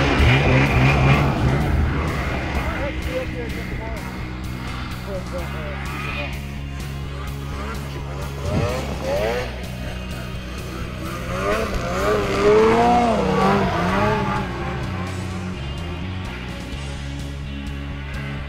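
Snowmobile engine revving hard as the sled pulls away through deep powder, then revving up and down again with a wavering pitch about halfway through and a few seconds later. Music plays underneath.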